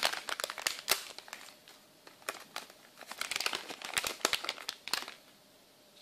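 Plastic anti-static bag crinkling as it is handled and opened, in two spells with a short pause between them, and going quiet near the end.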